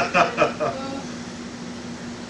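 A man's short laugh in the first second, then a steady low hum with even room noise.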